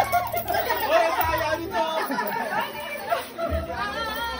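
Several people talking over one another at once, a busy crowd of voices with no single speaker standing out.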